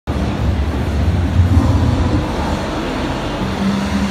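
Exhibition-hall background noise: a loud, steady low rumble with deep bass notes and a held low tone near the end.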